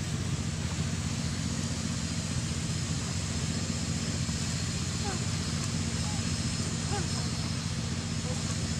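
A steady low droning hum under an even hiss, with a few faint short chirps about five to seven seconds in.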